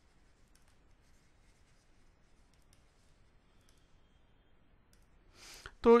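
Faint, scattered light clicks and scratches of a stylus writing on a tablet. Near the end comes a breath, and a man's voice starts speaking.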